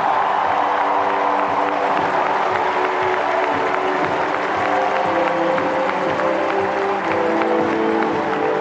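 Recorded crowd applause and cheering over held background-music chords, played back over a hall's loudspeakers.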